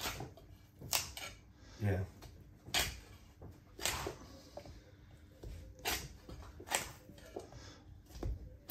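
Meat cleaver chopping into beef rib bones on a wooden butcher's block: about six sharp strikes at uneven intervals, one to two seconds apart.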